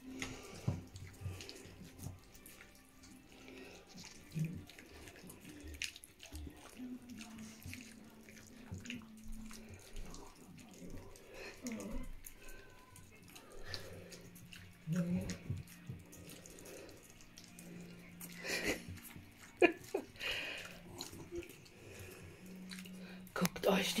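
Spitz puppies and their mother lapping and slurping wet mush from stainless steel bowls: irregular wet smacking and small clicks, busier in short bursts now and then.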